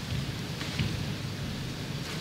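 A steady low rumble under an even hiss, with no distinct strikes or claps.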